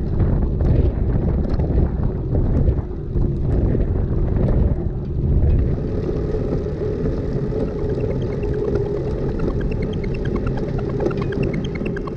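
Ride noise from a camera mounted on a bicycle rolling along a paved bike path: a loud low rumble of wind buffeting the microphone and tyre roar, with a steady hum and scattered light ticks.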